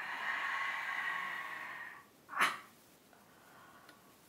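A man's long breathy sound of about two seconds, then one short, sharp breath through the nose about two and a half seconds in.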